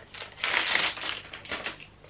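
Clear plastic wrapping crinkling as the small cardboard box inside it is handled, in a run of irregular rustles that die away near the end.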